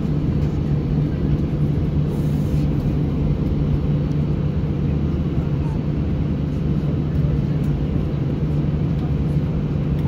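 Airbus A320 cabin noise while taxiing: a steady low drone from the jet engines at idle thrust, with a constant hum underneath, heard from inside the cabin.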